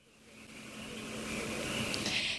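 Road noise of a vehicle, a rushing hiss with a faint low hum, swelling steadily over about two seconds.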